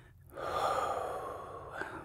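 A man's long, audible breath through the mouth, close to the microphone, starting about half a second in and fading before the end.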